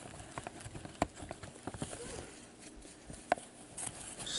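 Cards handled by gloved hands: scattered soft clicks and taps, with a sharper click about a second in and a louder one a little after three seconds.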